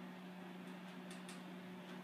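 Quiet room tone: a steady low electrical hum under faint hiss, with a few faint light ticks around the middle.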